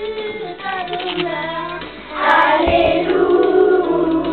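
Children's choir singing together, growing louder about halfway through.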